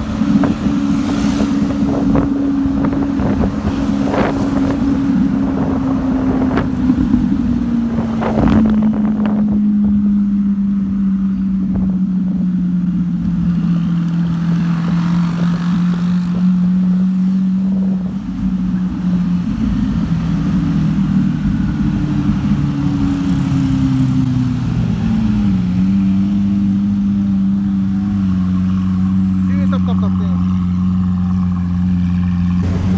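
Car engine heard from the cabin, a steady low drone at moderate revs. It slowly sinks in pitch, then rises and dips again as the car eases along in city traffic, with a few sharp clicks early on.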